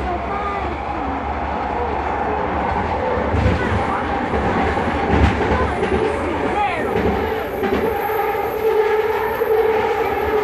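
Vancouver SkyTrain car, a linear-induction-motor train, running along its elevated guideway: a steady rumble of wheels on rail. About seven seconds in, a steady electric whine of several pitches grows stronger, with a faint very high whine above it.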